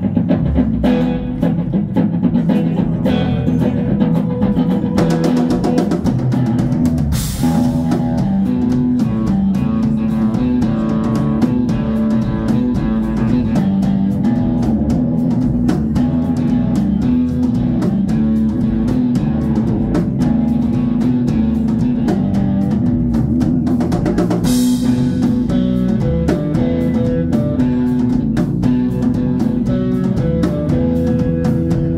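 Live band playing an instrumental passage: electric guitar over electric bass and a drum kit. Cymbal crashes ring out about seven seconds in and again about twenty-four seconds in.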